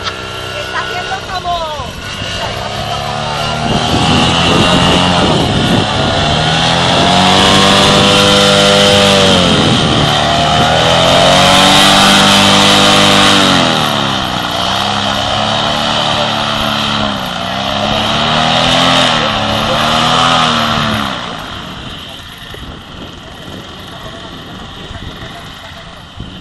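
Paramotor's backpack engine and propeller running, its pitch rising and falling every few seconds as the throttle is worked. It drops back to a much lower level about 21 seconds in as the pilot comes in to land.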